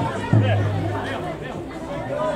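Voices calling and chattering across an open football ground, with a low steady hum that fades out about a second in.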